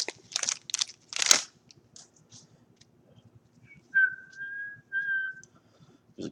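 A trading-card pack wrapper being torn open, with a few quick crinkling rips in the first second or so. Then a person whistles two short held notes about four and five seconds in.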